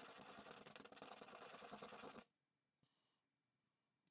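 Faint scratching of a small plastic clip piece rubbed over 80-grit sandpaper, roughening its flat face; it stops suddenly a little over two seconds in, leaving near silence.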